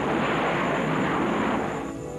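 Jet aircraft engine noise during a carrier catapult launch: a steady rushing roar that starts abruptly and dies down near the end.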